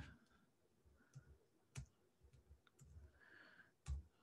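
Faint keystrokes on a computer keyboard: a handful of separate, sharp clicks, the strongest about two seconds in and just before the end.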